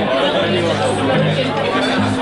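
Live rock band with electric guitars and electric bass playing, the low notes changing every half second or so. People are talking over the music.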